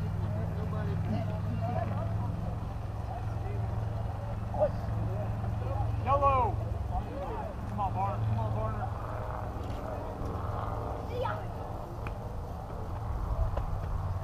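Distant shouted voices of players and spectators, with a couple of louder calls about six and eight seconds in, over a steady low hum.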